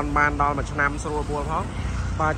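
A person talking continuously over a steady low hum.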